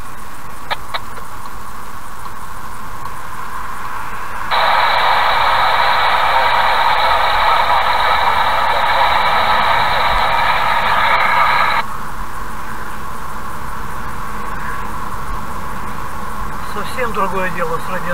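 Steady road and cabin noise of a car accelerating along a highway, heard from inside. About four and a half seconds in, a louder, thin-sounding noise cuts in, holds for about seven seconds and stops abruptly.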